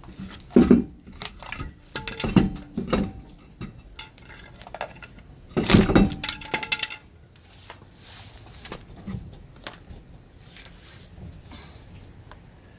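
Steel pry bar levering a heavy steel truck wheel off its hub studs: a series of sharp metallic clanks with a ringing tone, the loudest about six seconds in, followed by quieter scraping.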